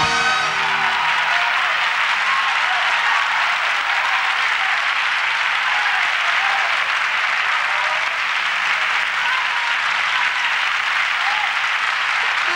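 Studio audience applauding steadily at the end of a song, a dense even clapping, just as the band's final chord dies away at the start.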